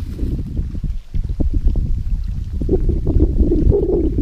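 Wind rumbling loudly on the microphone, with water sloshing as fishing bait is mixed in a bowl at the water's edge.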